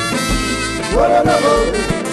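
Haitian konpa band playing live: dense band music with low bass notes about twice a second, and a melodic line rising and falling from about a second in.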